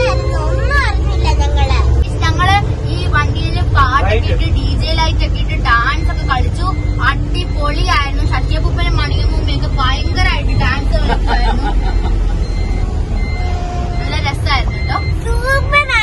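Inside a moving bus: passengers' voices over the steady low rumble of the bus's engine and road noise.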